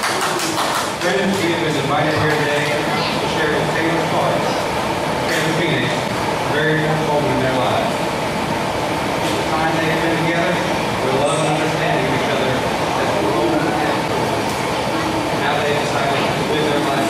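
A man's voice speaking, distant and hard to make out, in a large hall with low crowd noise.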